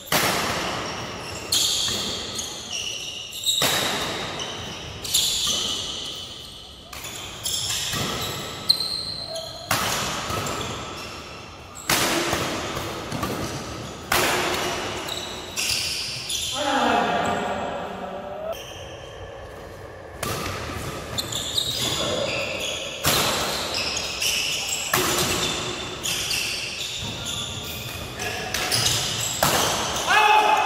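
Badminton rackets smacking a shuttlecock back and forth in a doubles rally, a sharp hit about every one and a half to two seconds, each echoing in a large hall.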